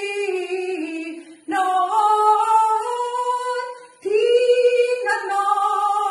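A woman singing a Malayalam song solo, with no instruments heard: long held phrases that step up and down in pitch, broken by two short breaths about a second and a half and four seconds in.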